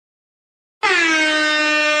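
An air horn sound effect: one long blast at a steady pitch, starting abruptly out of silence just under a second in.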